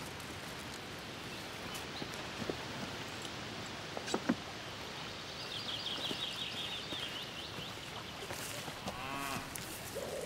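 Outdoor countryside ambience: a steady hiss of air and foliage with a few faint clicks. A rapid high bird trill runs in the middle, and a short animal call comes near the end.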